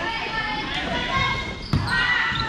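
Volleyball bouncing on the hard court floor, the sharpest hit about three-quarters of the way in, amid voices in a large echoing gym.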